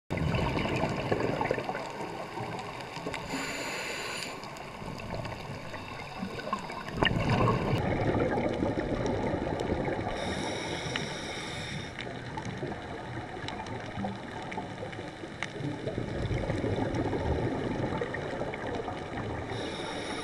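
Underwater sound on a coral reef heard through a camera housing: a steady wash of water noise with scattered faint clicks, and a brief hiss with a high whine about three seconds in and again about halfway through.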